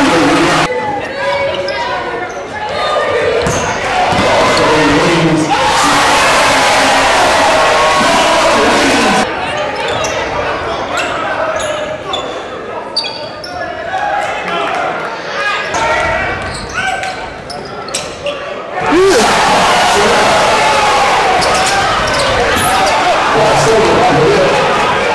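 Basketball game sound in a school gym: a ball dribbled and bouncing on the hardwood floor amid voices from players and spectators, with louder stretches of crowd noise.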